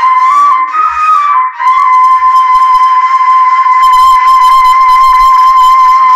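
A long white pipe blown like a flute into a microphone: a few short pitch steps, then one long, steady high note with a bright, reedy edge.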